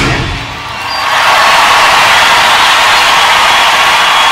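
Large concert crowd cheering and applauding as a live rock song ends: the band's last notes fade in the first moment, then the applause swells up about a second in and holds steady.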